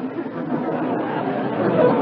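Studio audience laughing together, a steady wash of many voices, heard through the narrow sound of an old radio-broadcast recording.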